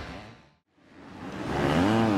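250-class motocross bike engines fade out to silence about half a second in, then fade back in. Near the end an engine revs up and down.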